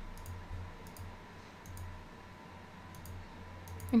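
Computer mouse button clicking several times, soft and sharp, a few of the clicks coming in quick pairs.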